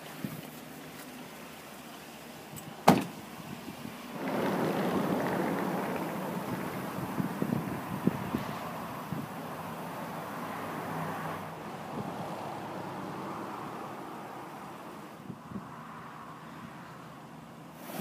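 A single sharp click about three seconds in, typical of a door latch opening. From about four seconds, the Chevrolet Silverado 2500HD's 6.6-litre V8 gas engine idling steadily, louder for several seconds and then quieter.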